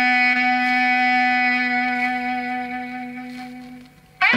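Clarinet holding one long, steady note at the close of a Greek popular song's instrumental introduction. The note fades away in the last second and stops just before the end.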